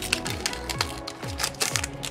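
Crinkling and crackling of a foil Pokémon booster pack wrapper as the cards are drawn out of it, the sharpest crackles near the end, over background music.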